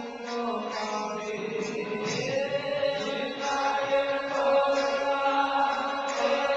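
Kirtan: devotional chanting sung with long held, gliding notes over musical accompaniment.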